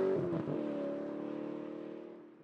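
A car engine running at a steady pitch, its note dipping slightly about half a second in and then fading out near the end.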